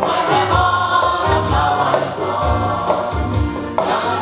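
A group of women singing together in unison, accompanied by a harmonium, with a low drum beat and jingling percussion keeping the rhythm.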